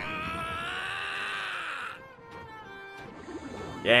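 A man's long, drawn-out yell from the anime's soundtrack, held for about two seconds and rising slightly in pitch before it cuts off abruptly. Faint background music follows.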